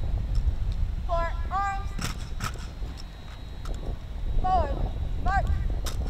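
A drill commander shouting long, drawn-out marching commands twice, with a few sharp knocks of rifles being brought up in the manual of arms, over a steady low rumble.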